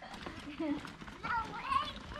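Only quiet speech: faint voices, a child's voice among them, in a pause between the louder talk.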